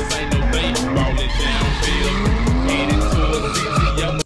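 Drift car engine revving up and down repeatedly while the tyres skid and squeal through a slide, over background music with a steady beat.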